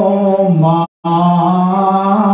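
A man's voice chanting through a microphone in long, held notes of steady pitch. The pitch steps down once, and about a second in the sound cuts out completely for a moment before the held note resumes.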